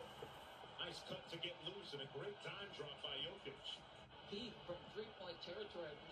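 Faint male speech from a basketball TV broadcast: a commentator calling the game under the highlight footage.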